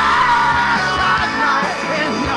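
Live rock band playing loudly, with a singer's voice holding a long, wavering note over the guitars and drums.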